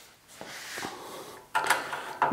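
The crosscut fence on a combination machine's sliding-table outrigger being handled: a soft sliding rub of metal parts, then a sharper clack near the end.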